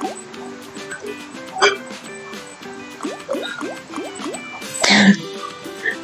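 Online fishing-themed slot game's background music with bubbly, dripping water sound effects and repeated short rising notes as the reels spin in free spins. There is a sharp sound effect a little under two seconds in and a louder burst of sound near the end.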